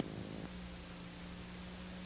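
Faint steady hiss of the recording's noise floor, with a low steady hum coming in about half a second in.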